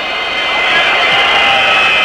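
Large football stadium crowd, its noise swelling steadily over the two seconds as the ball is played in from a free kick.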